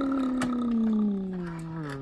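A long, drawn-out vocal sound from one of the men: a single held tone that slowly sinks in pitch, then drops away sharply just as it ends.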